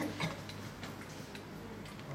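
A few faint, irregular ticks, with one louder click about a quarter second in, over a steady low hum.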